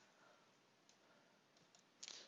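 Near silence: faint hiss with a few faint clicks, about a second in and near the end.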